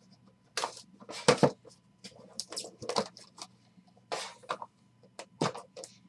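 Cardboard box of a Panini Immaculate trading-card pack being handled and opened, its inner box sliding out of the sleeve. The cardboard and packaging scrape and crackle in irregular short bursts, the loudest about a second in.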